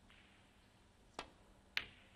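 Snooker cue tip striking the cue ball about a second in. About half a second later comes a louder, sharp click as the cue ball hits a red.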